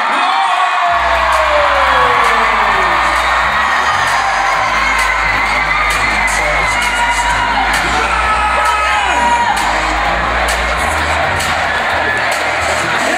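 An arena crowd cheering and whooping while amplified concert music with a deep bass line comes in about a second in.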